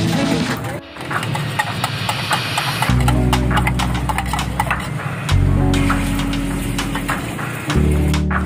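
Background music with long, deep bass notes, over quick clicking of a utensil beating eggs in a small steel cup.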